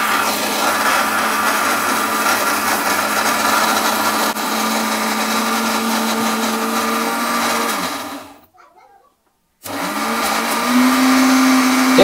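Bajaj GX6 mixer grinder motor running steadily, grinding cloves, black pepper, salt and leaves in its steel jar. About eight seconds in it winds down and stops, then starts again about a second and a half later, its whine rising back up to speed.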